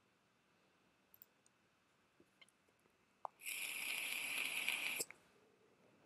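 Mostly near quiet, with a computer mouse click about three seconds in, then a brief even hiss lasting about a second and a half.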